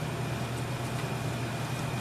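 Steady low machine hum, with faint scrapes and ticks of a spatula stirring a thick cream cheese filling in a stainless steel mixing bowl.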